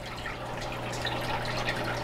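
Aquarium water trickling and dripping, as from a tank's filter return, over a steady low hum, gradually growing a little louder.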